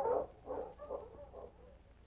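Sled dogs barking, a run of short barks about twice a second that fades out over a second and a half, as a sound effect in an old radio drama recording.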